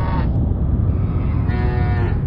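Cows mooing: one drawn-out call tails off just after the start and another begins near the end, over a steady low rumble.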